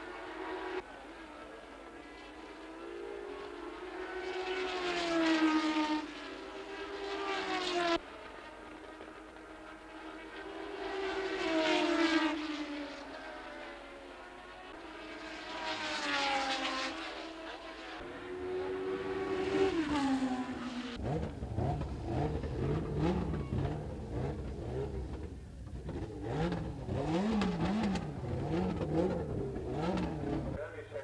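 Formula One racing cars passing at speed, each engine note swelling and bending in pitch as a car comes by, in waves about every four seconds with some abrupt cuts. Past two-thirds of the way through, the sound changes to a lower, wavering rumble.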